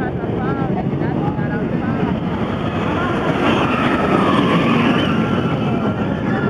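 Wicked Twister impulse roller coaster train running along its track: a steady rumble that swells about three to five seconds in, with people's voices over it.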